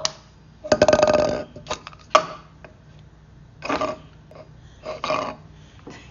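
A single rough, croaky, burp-like vocal sound lasting about half a second, about a second in, followed by a few short, quieter voice sounds.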